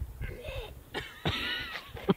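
A man making two short, breathy non-speech vocal sounds, cough-like, the second one about a second in and longer and louder.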